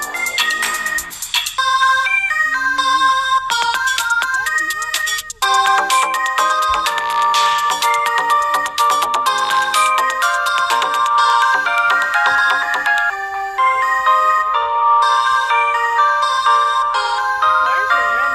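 Electronic beat played back from a phone music-making app: rapid pitched synth notes over sharp percussive ticks, dropping out briefly about five seconds in, then coming back fuller.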